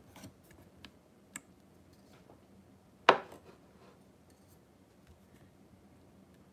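Light kitchen handling sounds: a few small clicks and taps, then one sharp knock about three seconds in, a hard object set down or struck on the wooden cutting board.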